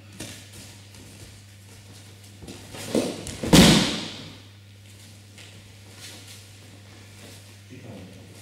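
A judo partner thrown by an outside foot sweep hits the tatami with a single loud thud about three and a half seconds in, ringing briefly in the hall, with a smaller knock just before it.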